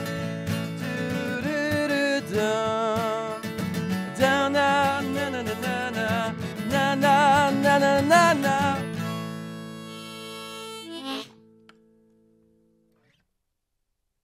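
Strummed acoustic guitar with a wavering harmonica melody over it, closing a song. The playing stops about nine seconds in, and the final chord rings for a couple of seconds before it cuts off.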